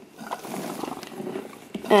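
Small pump of a homemade kidney model running steadily, pushing water mixed with glitter through the model's tubing.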